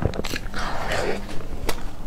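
Close-miked mouth sounds of eating soft cream cake from a spoon: wet chewing with sharp clicks and smacks, and a short soft rustling noise about half a second in.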